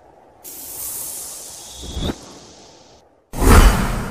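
Cinematic trailer sound effects: a high airy whoosh that fades, a short rising swell ending in a sharp hit about two seconds in, a brief silence, then a loud deep boom near the end.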